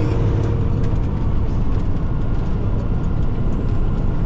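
Steady low drone inside a semi truck's cab while it cruises at highway speed: engine and road noise.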